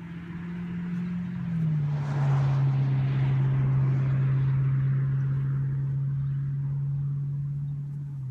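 A passing engine: a steady low hum that swells to its loudest a couple of seconds in and then slowly fades. It drops in pitch as it goes by, with a second small drop near the end.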